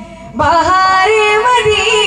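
A man's solo voice singing an Urdu naat: a held note fades away, and about half a second in a new phrase begins, the pitch sliding up and bending as it goes.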